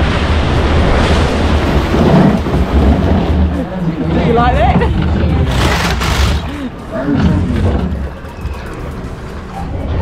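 Log flume boat splashing through the water at the bottom of a drop: a loud rush of water and spray, with riders' squeals and laughter about four seconds in and a short burst of splashing near six seconds, then a quieter run as the boat glides on.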